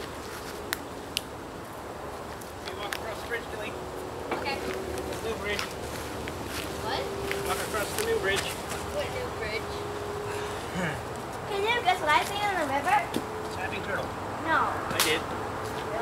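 Voices calling and talking without clear words, over a faint steady hum, with a few scattered clicks.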